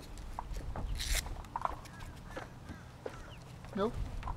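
Paddle board ankle leash being fastened by hand: small clicks and handling sounds with a brief scratchy rasp about a second in, over a low wind rumble on the microphone.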